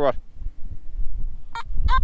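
Nokta Makro metal detector giving two short beeps near the end. This is its tone response on a deep, faint target, picked up with the detector at full sensitivity.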